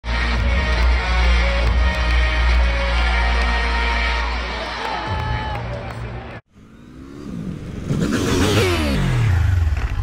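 Arena crowd noise with music playing at a basketball game, cut off abruptly about six seconds in. After a brief silence comes a swelling, whooshing sweep whose pitch falls toward the end.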